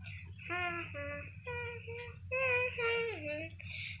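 A young girl singing a Russian lullaby unaccompanied, in short phrases of held notes, to rock a doll to sleep.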